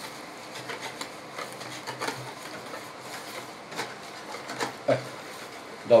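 Wire whisk stirring a thin yeast batter in a plastic bowl: irregular soft clicks of the wires against the bowl wall with wet swishing between them.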